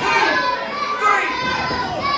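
Crowd of spectators shouting and yelling, with many high children's voices among them.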